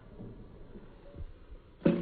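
A few soft low knocks, then near the end one sharp knock with a brief low ringing tone as a fried egg is flipped with a wooden spatula in a carbon steel skillet.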